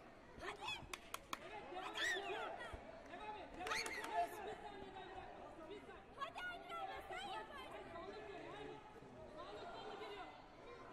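Indistinct voices and chatter in a large sports hall, with louder calls about two and four seconds in. A few sharp smacks come about a second in.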